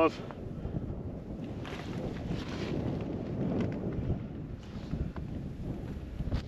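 Wind on the microphone: a low, uneven rumble.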